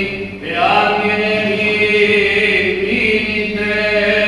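Byzantine chant by a single male voice, likely the priest chanting at the lectern microphone. He holds long notes, breaks off briefly just under half a second in, then resumes on a rising note.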